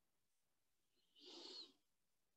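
Near silence in a pause between sentences, with one faint, brief soft sound lasting about half a second just after halfway.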